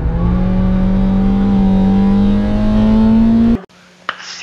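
Race-prepared hatchback's engine heard from inside the cabin, pulling hard under acceleration with its note rising steadily. It cuts off abruptly near the end.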